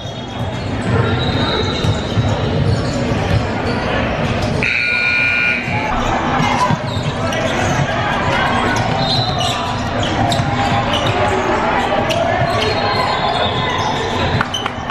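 Basketball game in a large gym: a ball bouncing on the hardwood court amid voices of players and spectators, all echoing in the hall. A high tone lasts about a second around five seconds in.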